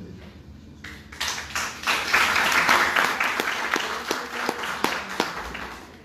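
An audience applauding. It starts about a second in, is loudest a second or two later, then fades away.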